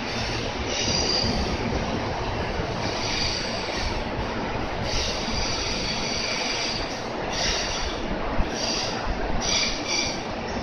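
JR Central electric commuter train running along a station platform: steady wheel-and-rail noise, with high wheel squeals that come and go and one sharp knock about eight seconds in.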